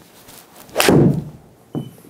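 A golf club striking a ball on an easy swing: one sharp hit just under a second in with a short ringing tail, then a much fainter knock near the end.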